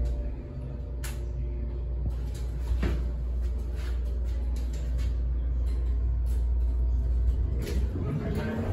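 Hydraulic elevator in operation: a steady low hum, with a few sharp clicks and knocks from the car and its doors.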